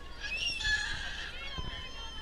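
A brief high-pitched squeal in the first second, over the steady chatter of a crowd.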